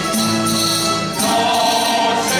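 Live music from a pulso y púa plucked-string ensemble playing held chords, which change about a second in.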